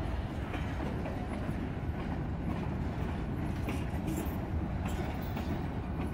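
Mixed manifest freight train of tank cars, hoppers and boxcars rolling slowly past, a steady low rumble of steel wheels on rail.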